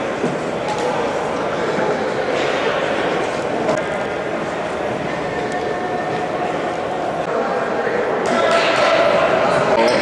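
Indistinct crowd chatter echoing in a school gymnasium, a little louder near the end.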